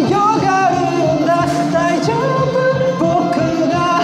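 Karaoke: a man singing a Japanese-language song into a microphone over the karaoke machine's backing track, which has a steady beat.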